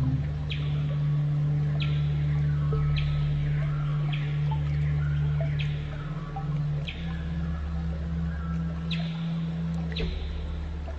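Slow ambient music of sustained low synth notes that change pitch around the middle, with a bird's short, sharp downward chirps repeating about once a second over a steady hiss of running water.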